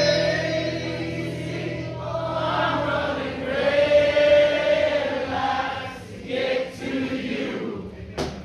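Live concert singing, with many voices singing a melody together as a crowd singing along would. A held low chord sits underneath and drops out about three seconds in.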